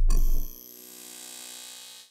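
Logo-intro sound effect: a deep boom dies away in the first half second, leaving a ringing chime tone that fades and then cuts off abruptly.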